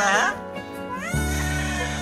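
A toddler crying in short wails, one rising sharply in pitch about a second in, over background music with a steady bass line.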